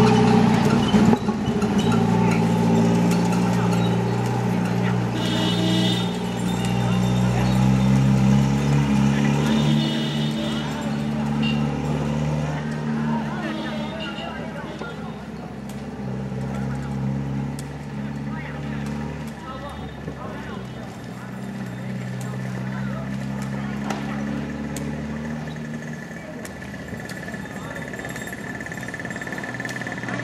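A motor engine running with a steady low drone whose pitch drifts slowly, louder in the first half, mixed with people's voices and occasional light taps from the wicker ball being kicked.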